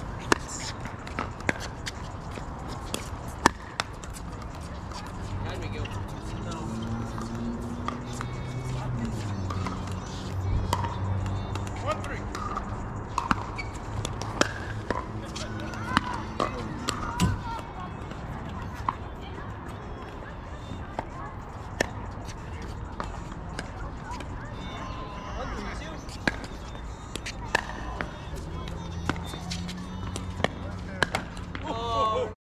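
Pickleball paddles hitting a plastic pickleball during a doubles rally: sharp, irregular pops, with the ball bouncing on an indoor hard court.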